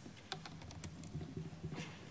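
Typing on a laptop keyboard: a faint, irregular run of key clicks.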